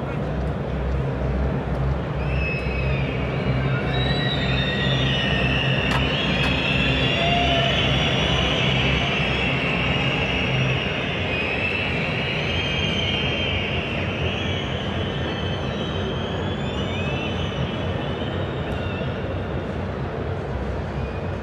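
Football stadium crowd noise: a steady din of many fans' voices from the stands, with high wavering whistles over it. A low droning hum underneath drops out about halfway through.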